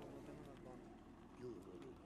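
Near silence: faint, distant men's voices talking low, over quiet background noise.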